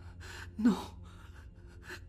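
A woman gasps in shock, a short breathy intake of breath, then says "No" in a strained voice, with another breath near the end.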